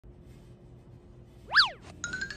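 A cartoon "boing" sound effect: one quick pitch sweep that shoots up and drops back down, about one and a half seconds in, after a stretch of faint room tone.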